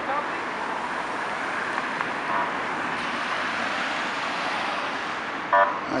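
Steady city street traffic noise, with one short, loud horn toot near the end.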